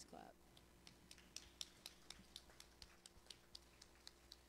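Near silence broken by faint, sharp clicks, several a second at irregular spacing, like light typing.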